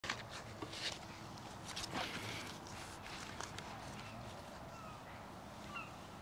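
Footsteps on grass and clothing rustle as a person walks up and sits down in a wooden garden chair, with a few soft scuffs and knocks in the first two seconds or so.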